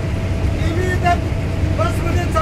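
Engine and road noise of an MSRTC state-transport bus rumbling steadily inside the passenger cabin, with a man's voice heard briefly in the middle.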